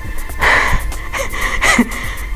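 A woman breathing hard, about one heavy breath a second, out of breath from climbing a hill, with wind rumbling on the microphone.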